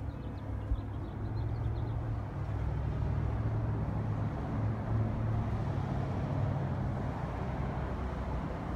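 Road traffic on a street below: a steady low engine rumble that swells in the middle for a few seconds as a vehicle goes by.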